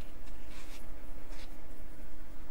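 Steady low hum of the recording's background noise, with two faint short rustles about half a second and a second and a half in.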